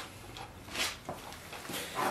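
Light handling noise from a plastic-housed leaf blower being gripped and worked by hand: a few faint knocks and one brief scuff a little under a second in.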